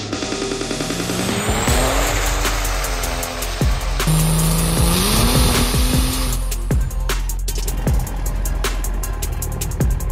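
Music with a heavy electronic beat mixed with diesel pickup engine sound. The engine revs up twice in the first half, its pitch rising each time, and the beat and bass take over in the second half.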